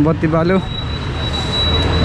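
A brief bit of speech, then a steady engine noise that swells louder with a deepening hum toward the end, from a motor that cannot be seen.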